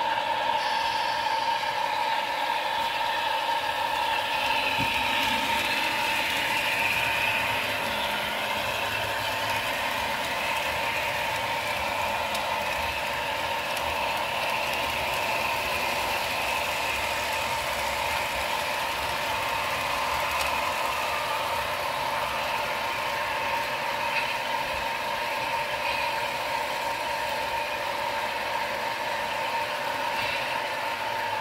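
Model train running on a layout: a steady mechanical whirring of motor and gearing with the rolling of wheels on rail, a little louder between about four and eight seconds in.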